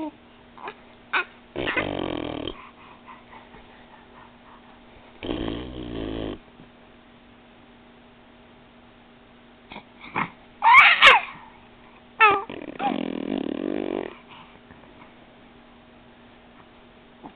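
A four-and-a-half-month-old baby's vocal noises: rough, breathy grunts about two and six seconds in, then a loud high squeal sliding up and down about eleven seconds in, followed by another rough grunt. A faint steady hum runs underneath.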